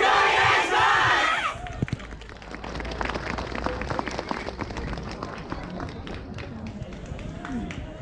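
A group of young dancers shouts a call together for about the first second and a half, ending with a falling cry. Then come scattered short taps and a few claps while the group moves into position.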